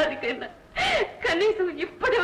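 A woman crying as she speaks, her voice wavering, with a sharp gasping sob about a second in.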